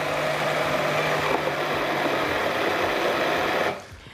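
Electric hand blender running in a glass jar of olive oil and pomegranate seeds, chopping the seeds up. It runs steadily and then cuts off suddenly near the end.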